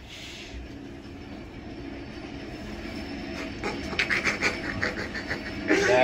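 Kone traction elevator car running upward with a squeaky wheel in the hoistway: a low running rumble, and from about halfway a rhythmic squeak at about three or four a second that grows louder toward the end. The riders first took it for the counterweight, then decided it must be something on the car itself.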